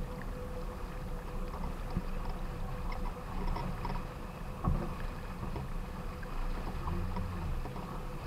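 Water rushing along the hull of a small sailboat heeled over under sail, with a steady low rumble of wind on the microphone. One sharp thump a little past halfway.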